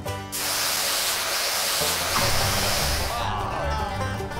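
Steam whistles going off right beside the contestant: a sudden loud blast of hissing steam starting about a third of a second in, lasting about three seconds, then fading.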